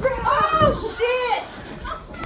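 A woman's voice giving two long, high-pitched cries that each rise and fall in pitch.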